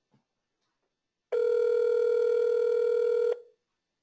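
Telephone ringback tone over a speakerphone: one ring of about two seconds, starting a little over a second in, meaning the outgoing call is ringing at the other end and has not yet been answered.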